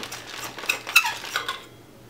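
Metal body of a Fifine K040 handheld wireless microphone being unscrewed to open its battery compartment: a quick run of small metallic clicks and tings, the sharpest about a second in, settling into faint handling.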